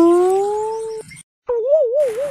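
Comedy sound effects edited in: a steady tone that rises slightly in pitch and cuts off abruptly about a second in, then, after a short gap, a warbling tone that wobbles up and down about five times a second and slowly fades.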